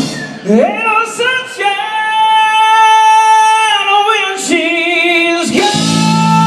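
A singer's voice carries on alone with the band dropped out, sliding up into one long held wordless note. The full band with drums comes back in near the end.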